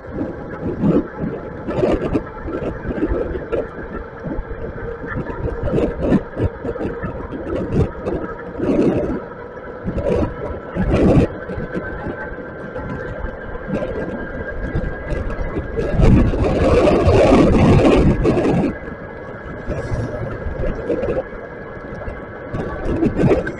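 Wind buffeting the microphone of a moving e-bike's camera, with road noise from tyres on wet pavement. It comes in irregular gusts, with a louder, sustained stretch of about two seconds in the second half. A faint steady hum runs underneath.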